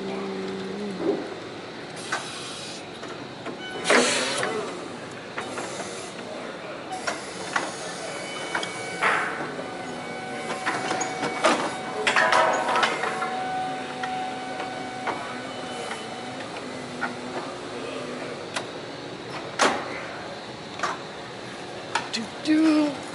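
Forklift running while being manoeuvred, its drive and mast hydraulics giving a steady hiss with a faint whine that comes and goes, and a few sharp clunks and knocks, the loudest about four seconds in and around twelve seconds.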